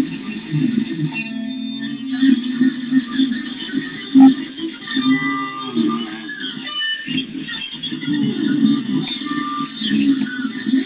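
Ibanez electric guitar played through an amp, improvising a lead line in the key of F sharp, with one note bent up and back down about five seconds in.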